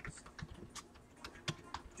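Computer keyboard being typed on: a few faint, irregularly spaced keystrokes.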